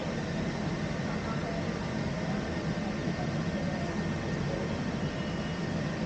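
Steady low hum inside a Peak Tram car standing at its station platform, with faint indistinct voices in the background.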